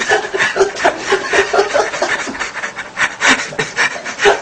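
People stifling laughter: rapid, breathy snickers and giggles in short bursts, several a second.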